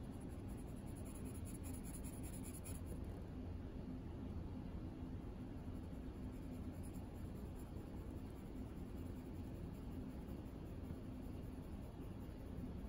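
Faint, steady scratching of a 2B graphite pencil shading on paper, with a low steady hum underneath.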